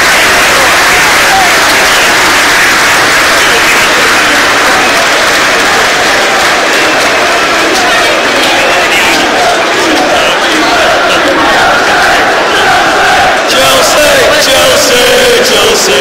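Large crowd of football supporters cheering and chanting, a loud continuous mass of voices picked up close on a phone's microphone. From about halfway through, a sung chant in unison rises out of the noise.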